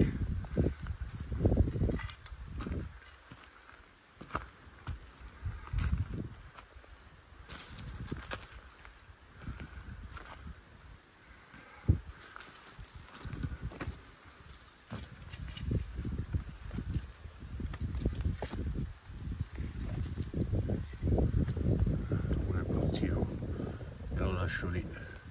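Footsteps through forest undergrowth, with leaves and twigs rustling and crunching underfoot in an uneven rhythm, plus a sharp snap about halfway through.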